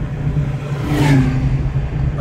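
Car engine and road noise heard from inside the cabin while driving: a steady low drone.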